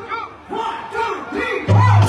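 Several short, loud shouted calls from voices, each rising and falling in pitch. Near the end, amplified stage music with a heavy bass beat comes in.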